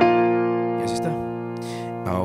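Piano chord struck once and left to ring, fading slowly as it sustains.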